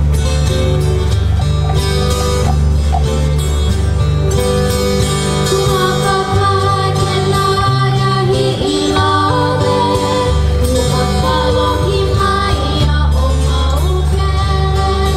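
Acoustic guitar and ukuleles playing a Hawaiian song together, with singing over the strings.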